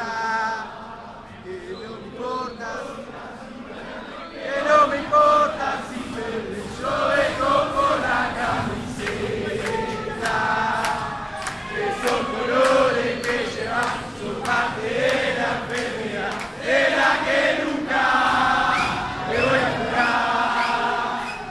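Crowd of football fans chanting a terrace song together in many male voices. The singing is thinner at first and swells fuller and louder from about five seconds in.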